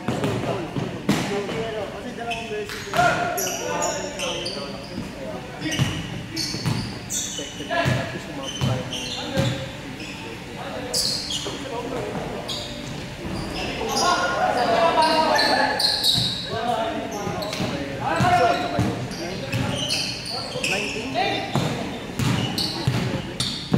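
Basketballs bouncing on a hardwood gym floor, scattered thuds through the stretch, mixed with players' voices and calls, all echoing in a large indoor hall.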